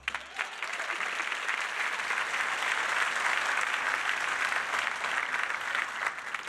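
Studio audience applauding at a steady level, with the last low note of a musical sting dying away in the first half-second.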